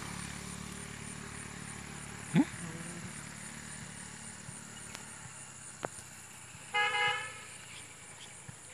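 Outdoor background hum with a short, loud, rising whistle-like sound about two and a half seconds in, and a brief horn toot near the end.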